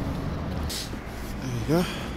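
A brief rustle of handling noise about two-thirds of a second in, over a low background hum, then a man's voice near the end.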